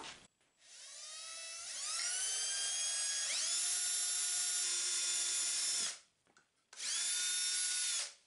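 Cordless drill boring a hole in a wooden board: the motor's whine climbs in pitch over the first few seconds, holds steady, stops about six seconds in, then runs again briefly at the same steady pitch near the end.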